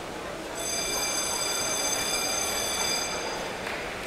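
Underwater hockey referee's underwater buzzer sounding one long, high-pitched tone of nearly three seconds, starting about half a second in. It is heard through an underwater microphone over a steady hiss of pool noise.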